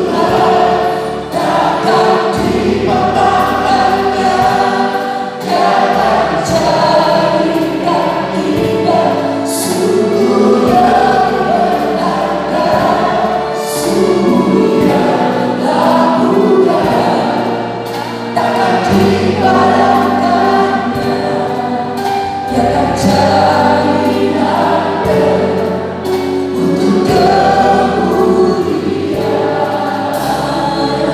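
A small mixed vocal group sings an Indonesian worship song in harmony through handheld microphones, over an accompaniment with a low bass line.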